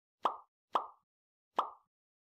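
Three short pop sound effects, a quarter second in, half a second later, and near the end, each dying away quickly. They mark the Like, Comment and Subscribe captions popping onto the screen.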